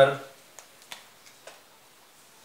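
A few faint, sharp clicks, four in all, spaced unevenly over about a second, just after a man's voice stops.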